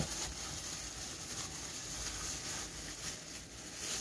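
Faint handling sounds of plastic-gloved hands working a yogurt-and-spice marinade into raw chicken pieces in a plastic bowl, over a low steady hiss, with a short click right at the start.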